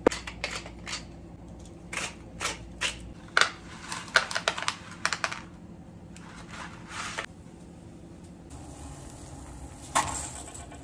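A hand-twisted pepper grinder clicking in a run of sharp, irregular strokes over the first few seconds. Quieter handling of a bundle of dry spaghetti follows near the end.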